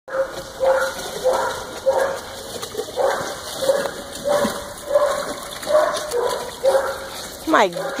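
A dog barking over and over in a steady rhythm, nearly two barks a second, each bark short and on much the same pitch.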